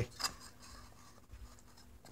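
Faint scraping of a wooden bandsaw-box drawer piece being slid back into the box body, wood rubbing on wood.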